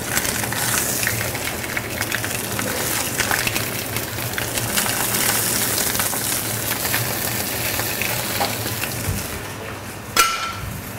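Sea bass portions frying in hot oil in a pan on a gas hob. A dense sizzle with crackles starts sharply as the fish goes into the oil and eases off near the end.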